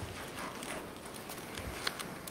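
Faint, irregular footsteps and small knocks over quiet room noise, a few separate strokes.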